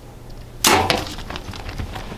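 Compound bow shot: one sudden loud snap of the string release about half a second in, dying away quickly, followed by a few faint clicks.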